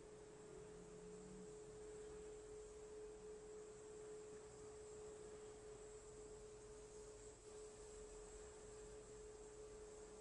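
Near silence: a faint steady single tone under low hiss.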